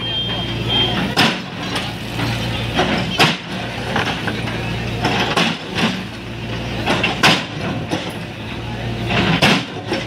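JCB backhoe loader's diesel engine running steadily while its bucket breaks up concrete steps, with sharp knocks and crunches of masonry every second or two, often in pairs.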